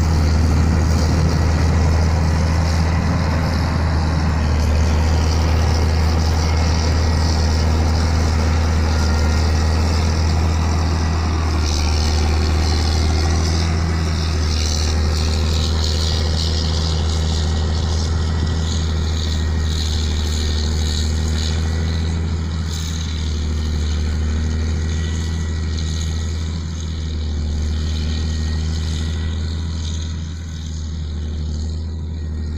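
Diesel engine of a Jacto Uniport 3030 self-propelled crop sprayer running steadily with a low hum, growing slightly fainter over the last several seconds.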